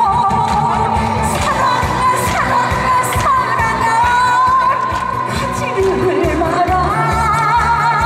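A woman singing a Korean popular song live into a microphone over a backing track with a steady bass beat, holding long notes with vibrato.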